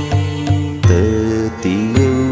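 Buddhist devotional mantra chant: a voice singing over a low drone and a steady beat, its pitch sliding about a second in and again near the end.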